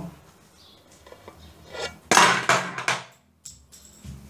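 Small hard objects clattering as they are handled or knocked about. It is quiet at first, then a loud clattering burst about two seconds in lasts just under a second, with a few lighter knocks near the end.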